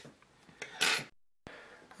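Brief handling noise of the camera being moved: a few light clicks and a short rustle a little under a second in, then dead silence for a moment where the recording cuts.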